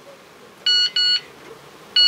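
Mobile phone text-message alert: two short electronic beeps close together about two-thirds of a second in, with the next pair of beeps starting at the very end.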